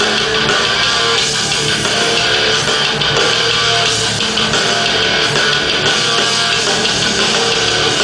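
Hardcore band playing live: distorted electric guitar, bass guitar and drum kit, loud and steady without a break, recorded from within the crowd.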